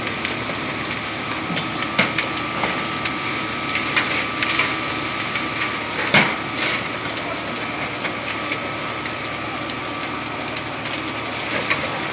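Garages burning fiercely: a steady rushing noise with sharp cracks and pops, the loudest about six seconds in.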